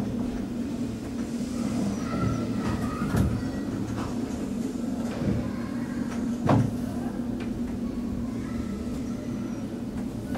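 Passenger lift car travelling downward, with a steady low hum of its running and two short knocks, about three seconds in and again about six and a half seconds in.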